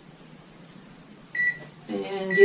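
A single short, high electronic beep from a microwave oven's keypad about a second and a half in, against quiet room tone, as the microwave is being set to thaw chicken.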